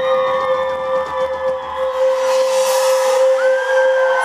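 Live band music with no singing: long sustained notes held over a steady, unchanging tone, with a new high note sliding in and held near the end.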